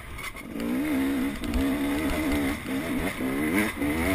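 Dirt bike engine under way on a trail, heard from on the bike. The revs drop off briefly at the start, then pick up and hold steady, easing off and coming back on a couple of times.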